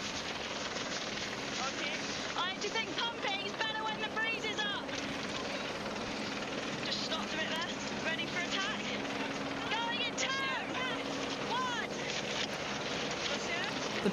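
On-the-water race ambience: steady wind and water noise under a low, steady engine hum, with short voice calls at intervals.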